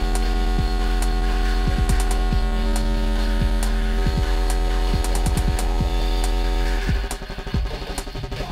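Electronic techno mix: a heavy, sustained low bass drone with several held synth tones above it and scattered sharp percussive clicks. About 7 s in the bass drone cuts out and the level drops, leaving a choppier, lighter rhythm.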